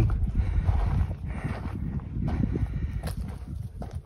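Wind buffeting the microphone as a low, uneven rumble, with light rustling and a couple of faint clicks, near 1 second and 3 seconds in.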